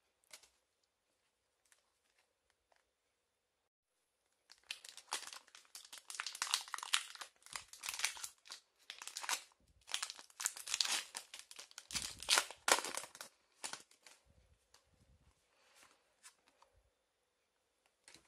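Foil Pokémon Hidden Fates booster pack wrapper being torn open and crinkled by hand. After a quiet start, a long run of crackling tears and crinkles begins about four and a half seconds in and lasts roughly ten seconds, then dies down to faint rustling.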